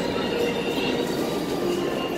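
New York City subway train running in the station: a steady rumble with a few faint high tones above it.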